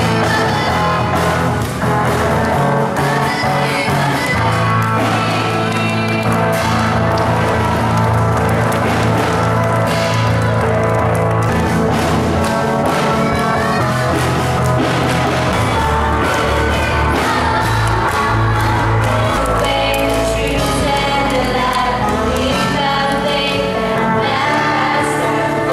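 Live worship music from an amplified band with electric guitar and drums, with singing throughout.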